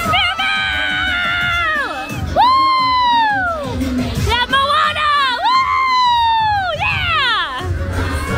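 Children in a parade crowd shrieking and calling out to the characters in long, high cries that fall in pitch, three or four in a row, with crowd cheering and parade music underneath.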